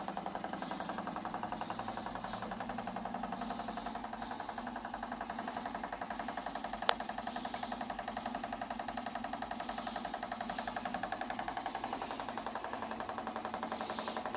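Whole-body vibration plate exercise machine running with a steady, fast buzzing rattle. A single sharp click about seven seconds in.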